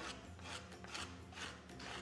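Kitchen knife slicing a peeled banana into rounds on a wooden cutting board: a quick run of faint, soft cuts and taps.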